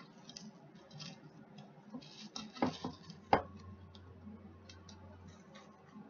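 Light clicks and rustles of kitchenware being handled, with two sharp knocks a little before the middle, the second one the loudest.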